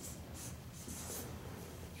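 Felt-tip marker writing on flip-chart paper: a few faint, short scratchy strokes.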